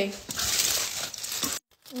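Aluminium foil crinkling as it is pulled open by hand for about a second and a half, then cutting off suddenly.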